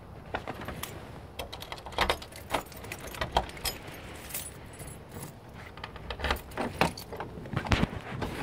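Irregular clicking and rattling, a series of sharp light knocks, the loudest about two seconds in and near the end, over a low steady rumble.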